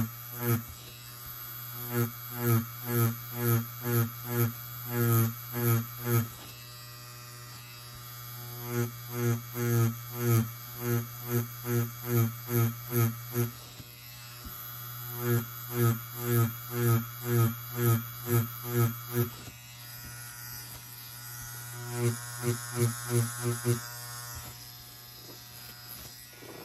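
Tattoo machine buzzing steadily, swelling in rhythmic pulses about two a second with the whip-shading strokes of the needle into practice skin. There are four runs of strokes with short quieter pauses between them.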